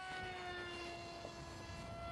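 Electric motor and propeller of a small, lightweight Easy Trainer 800 RC plane in flight: a faint, steady whine with several overtones that drifts slightly lower in pitch.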